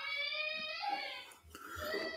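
A faint, muffled person's voice in two short stretches with a brief pause between them.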